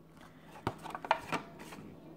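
Plastic blister pack and card of a Hot Wheels die-cast car being handled and opened: a few sharp crackles and clicks of stiff plastic, clustered in the second half.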